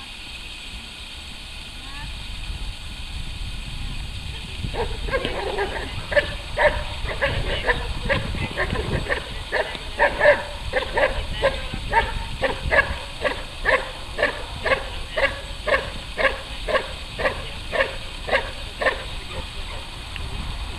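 Belgian Malinois barking steadily and fast, about two sharp barks a second, at a padded helper during protection training. The barking starts about five seconds in and keeps an even rhythm until near the end.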